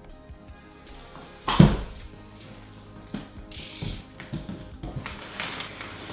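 A single loud thump about one and a half seconds in, then crinkling and rustling of brown kraft packing paper being pulled out of a long cardboard shipping box.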